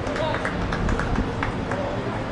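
Outdoor soccer match sound: players' voices calling across the pitch and several short, sharp sounds through the first second and a half, over a steady low rumble.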